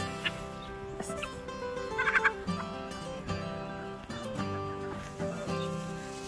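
Background guitar music, with a few short poultry calls over it, a cluster of quick fluttering calls about two seconds in.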